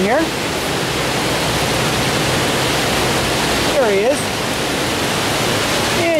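Water pouring over a low-head dam spillway, a steady loud rush.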